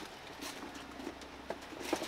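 A few light knocks and clatter of kitchen prep, containers and food handled on a wooden cutting board, two of them near the end, over a low steady hum of kitchen equipment.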